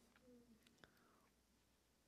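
Near silence: room tone with a faint click.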